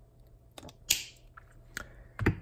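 Light clicks of a gear being pressed back into a sunroof motor's metal housing. The clicks are small and few, with one sharper click and a short hiss about a second in.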